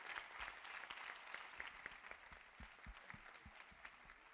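Faint audience applause, many hands clapping, slowly dying away toward the end.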